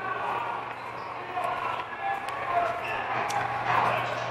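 Footsteps walking down a corridor, a few light taps about a second apart, over a steady low hum with faint voices in the background.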